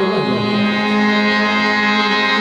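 Harmonium holding a steady chord in qawwali music, with no drums or singing over it.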